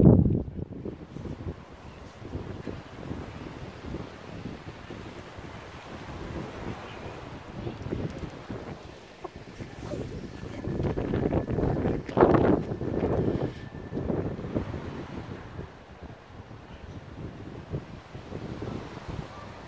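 Gusty wind buffeting the microphone, rising to a louder stretch for a few seconds around the middle.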